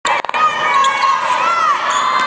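Sneakers squeaking on a hardwood basketball court as players jostle for position, over the chatter of the gym crowd. The squeaks rise and fall in pitch, with the longest near the end.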